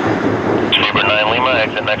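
A steady jet engine rush from a British Airways Boeing 787 Dreamliner's Rolls-Royce Trent 1000 engines as it rolls out on the runway after landing. From under a second in, an air traffic control radio voice talks over it and becomes the loudest sound.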